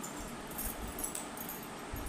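Faint clinks and rustle of fingers mixing rice on a steel plate, a few light high ticks over a steady low hiss.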